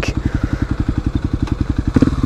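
Kawasaki KLX250SF's single-cylinder four-stroke engine idling, a steady, rapid, even pulse picked up by a GoPro's built-in mic.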